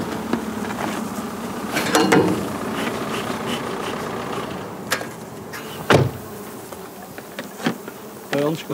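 Honeybees buzzing steadily over a flowering field, with a sharp knock about six seconds in.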